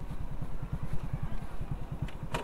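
Motorcycle engine running at low revs as the bike rolls slowly, a steady low putter of rapid, even pulses.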